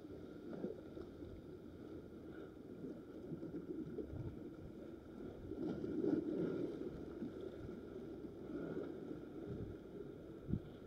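Sea water lapping and sloshing at the water's edge, with wind on the microphone; an uneven, low rushing that swells about six seconds in.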